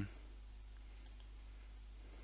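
Low steady electrical hum with faint hiss on the recorded phone line, with two faint clicks about a second in.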